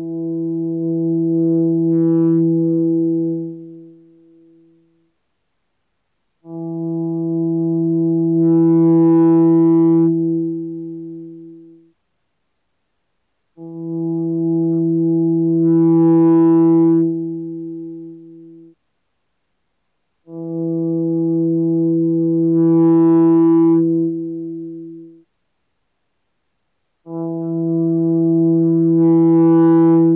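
2014 Gibson SGJ electric guitar through an amp, playing the same single note (E, seventh fret on the A string) five times. Each note is held about five seconds and faded in with a volume pedal, so it grows in loudness over a second or two before stopping, with short silences between notes.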